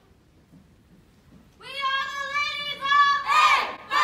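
After a pause of about a second and a half, a group of women's voices calls out together in unison in long, drawn-out tones. A louder shout comes near the end.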